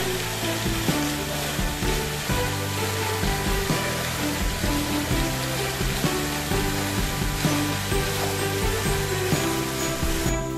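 Background music, with the steady hiss and splash of small fountain jets falling into a pool underneath it.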